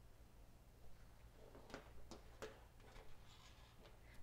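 Near silence with three or four faint clicks in the middle, from small plastic electronic modules being handled and set on a tabletop.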